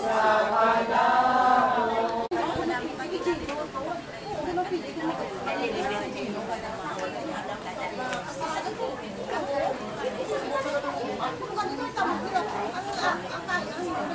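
A few seconds of voices singing together, breaking off abruptly about two seconds in. Then many people talk over one another in a steady murmur of chatter.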